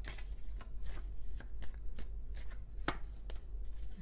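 Tarot deck being shuffled by hand: a run of irregular soft card flicks and slaps, one sharper near the end.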